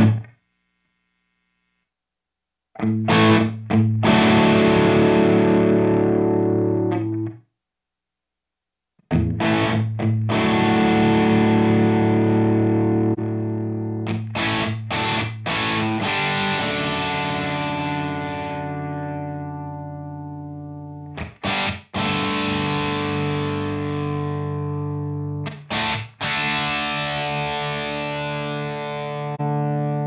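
Distorted electric guitar, a PRS 513 played through a Mesa Boogie TC50 tube amp and heard through the Two Notes Torpedo Captor X's simulated miked cabinet on a heavy, dry preset. Chords are struck and left to ring out and decay, with the sound cutting to dead silence twice in the first nine seconds.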